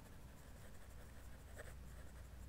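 Pen scratching faintly on paper as a word is handwritten in short strokes.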